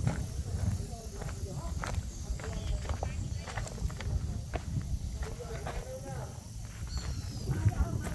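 Indistinct voices of several people talking at a distance, with scattered sharp clicks and knocks over a steady low rumble.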